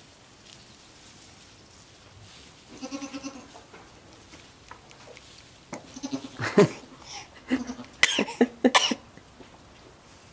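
Goat kid bleating: one wavering call about three seconds in, then a run of shorter, louder cries between about six and nine seconds in.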